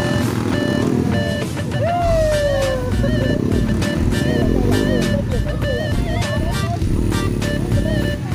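Off-road dirt bike engine running and revving, mixed with music.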